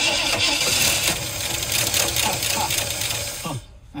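A long-dormant V8 in a 1979 Ford F100 cranking on its starter motor and kicking into a few firings without catching to run. It winds down a little before the end, with a short laugh.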